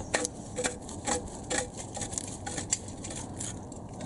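Light, irregular metallic clicks, about two a second, as a downstream lambda (oxygen) sensor is screwed in by hand to its threaded boss on a steel exhaust downpipe.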